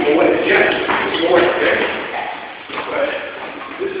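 Indistinct talking that the recogniser did not turn into words; no clear punch on the bag stands out.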